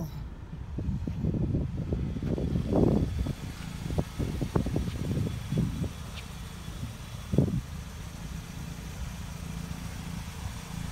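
Wind rumbling on the microphone in uneven gusts, heaviest in the first half, over a steady low hum.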